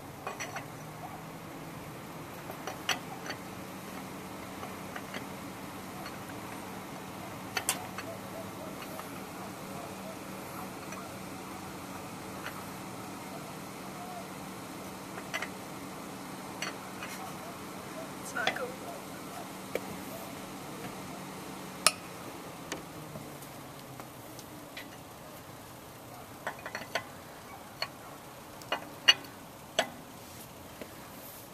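Steel lug wrench clinking against the wheel nuts as they are loosened, with scattered sharp metallic clicks, the loudest about three-quarters of the way in and near the end. A steady low hum runs underneath and fades out about three-quarters of the way through.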